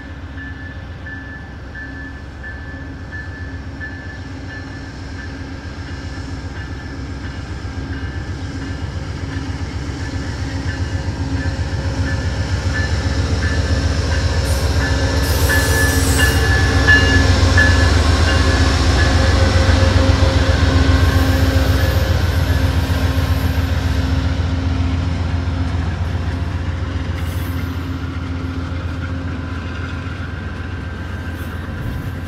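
Amtrak GE P42DC diesel locomotive hauling a passenger train, approaching and passing close by: the engine and the wheels on the rails grow steadily louder to a peak a little past halfway, then ease off as the coaches roll past.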